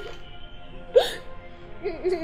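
Background film music with steady held notes, and a woman's short crying sob about a second in.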